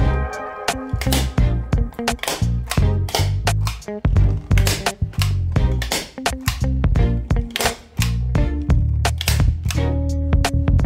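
Background music with a bass line and beat, over which a hand staple gun snaps repeatedly as it drives staples through upholstery fabric into a chair seat's board.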